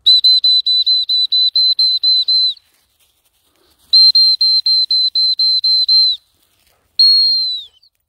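Gundog whistle blown in two runs of rapid short pips, about five a second, then one longer blast that sags in pitch as it ends. Runs of quick pips are the usual gundog recall signal.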